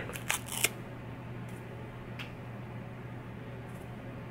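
Soft handling clicks and rustles from a fabric adhesive bandage being pressed and wrapped onto a finger: several in the first second and one more near the middle, over a steady low hum.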